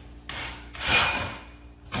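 Shoe molding and a handsaw scraping in a plastic miter box: two scraping strokes, the second longer and louder, as the piece is set to its mark for the 45-degree cut.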